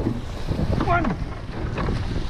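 Wind buffeting the microphone over the rush of water along the hull of a surf boat being rowed hard, with a shouted stroke count about a second in.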